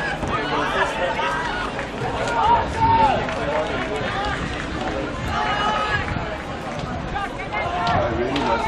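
People talking near the microphone over a background of crowd chatter.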